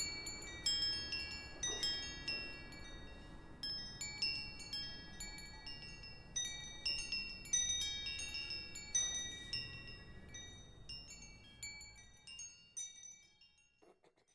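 Wind chimes tinkling: irregular high metallic strikes that ring on and overlap, growing sparser and fading out near the end.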